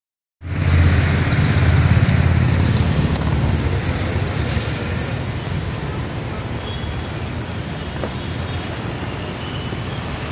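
Steady road traffic noise with a low engine rumble, loudest in the first three seconds.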